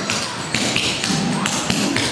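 Metal clogging taps on shoes striking the floor in a quick, uneven run of strikes: scuff and gallop steps, one on each side.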